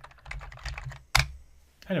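Computer keyboard typing: a quick run of key presses, with one louder keystroke just past a second in.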